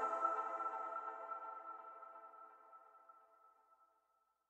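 The last held chord of a rap track's electronic beat ringing out alone and fading away to silence over about two and a half seconds.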